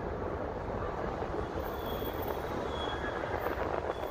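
Steady downtown city noise: an even wash of distant traffic with no single event standing out.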